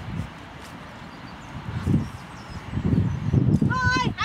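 Gusts of wind buffeting the microphone, a low, irregular rumble that gets stronger about halfway through. A voice starts just before the end.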